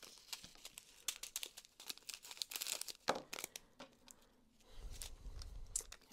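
Small clear plastic zip baggies crinkling and crackling as they are handled and pressed, in a string of short irregular crackles, the loudest about halfway through. A low muffled rumble of handling comes near the end.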